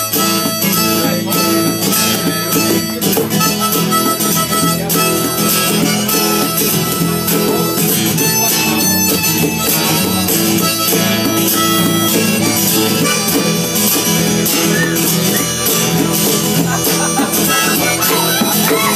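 Blues harmonica played cupped in the hands against a microphone, over a steadily strummed acoustic guitar.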